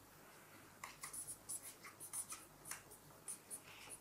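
Pens scratching on paper in quick, irregular strokes, faint and close to the microphone.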